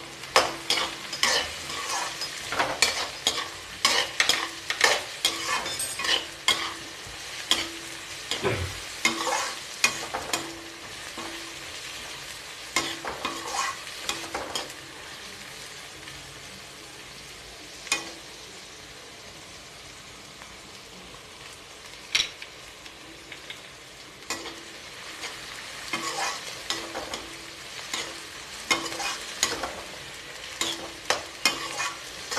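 Metal slotted ladle scraping and knocking against a metal kadai as chopped vegetables are stir-fried, over a steady light sizzle. The stirring strokes come quickly for the first ten seconds or so, ease off in the middle apart from a couple of single knocks, and pick up again near the end.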